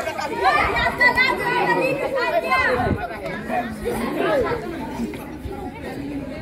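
A group of schoolchildren chattering, many voices overlapping at once.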